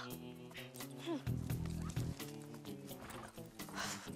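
Background music score with a horse heard beneath it and a few sharp hoof knocks, and a girl's short "hmm" about a second in.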